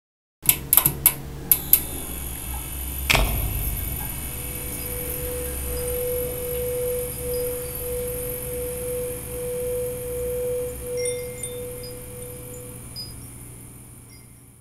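Intro logo music: a few sharp clicks, then a hit about three seconds in, followed by a long held tone that pulses gently with faint high chimes, fading out near the end.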